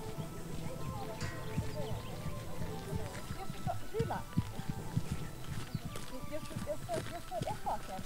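A horse cantering on a grass arena, its hoofbeats coming as irregular dull thuds, with people's voices talking in the background.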